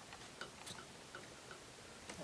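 A few faint, light clicks of small silver jewelry pieces being handled on a tabletop.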